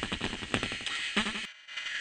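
Beatboxer's vocal percussion: a quick run of sharp mouth-made drum hits, deep kick-like thumps mixed with snare- and hi-hat-like clicks, about five a second. The beat stops short about a second and a half in.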